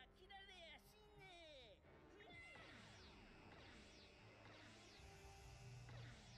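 Very faint anime episode audio: a character's voice speaking a line in the first two seconds or so, then quiet background music.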